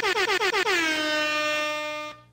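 An air-horn salute: a few quick blasts falling slightly in pitch, then one long, steady, high held blast that fades a little before cutting off.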